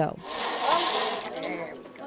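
Bingo balls rattling and tumbling in a hand-turned wire bingo cage, dying away near the end.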